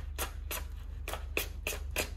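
Craft knife blade slicing through a sheet of paper held in the hand, a quick uneven series of short crisp cuts, about five a second, over a low steady hum.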